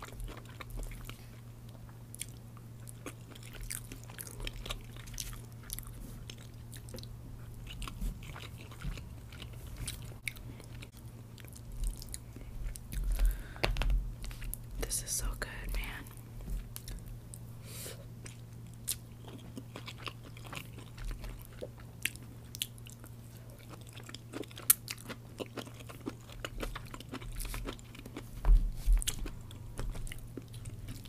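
Close-miked chewing and biting of General Tso's chicken with rice and vegetables: many short wet mouth clicks, with wooden chopsticks scraping and tapping in a plastic container. A steady low hum runs underneath.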